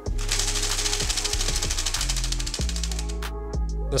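DIY split-flap display modules flipping their flaps, a fast clatter of clicks that stops briefly near the end, over background music.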